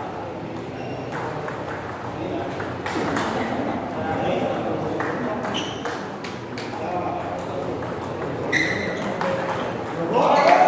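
Table tennis rallies: the ball clicking sharply off the bats and bouncing on the table, many times, with people talking in the background.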